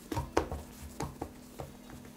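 Hands rolling a rope of soft yeast dough on a floured wooden board: a few light, irregular taps and pats as palms and fingers press the dough against the board.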